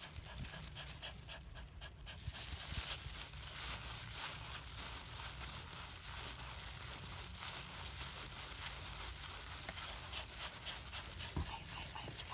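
Toy poodle in labour panting hard with open mouth, her breathing irregular: the laboured breathing of a whelping dog in pain.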